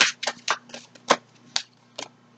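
A deck of tarot cards being shuffled by hand: a quick, uneven run of short card snaps, about eight in two seconds.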